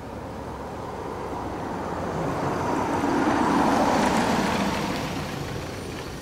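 A pickup truck driving past close by: engine and tyre noise swell to a peak a little past halfway, then fade as it drives off.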